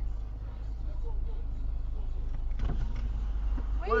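Car idling at a standstill, a steady low hum heard from inside the cabin.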